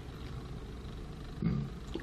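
Quiet room tone with a steady low hum. A short murmured "mm" comes from a person near the end.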